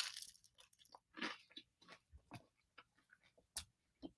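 A person chewing a mouthful of food close to the microphone: faint, with a scatter of small irregular clicks.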